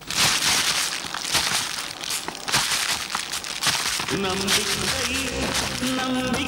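Grain being winnowed: poured from a height and tossed on a flat winnowing tray, a dry rushing hiss with many small rattles. A melody comes in over it about four seconds in.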